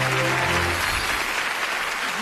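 Audience applause over held background-music notes; the music dies away about a second in while the applause carries on.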